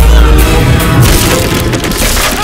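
Film fight sound effects over a background score: a heavy low boom of a blow landing, then wood cracking and splintering as bodies crash through a wooden panel.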